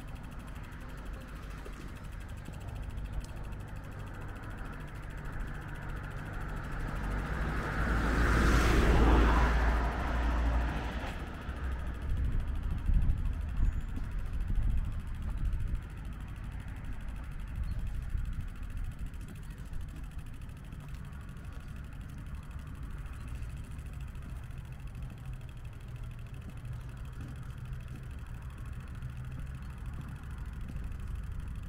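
A car passes by: its sound swells, peaks about nine seconds in and fades away within a few seconds, over a steady low outdoor rumble.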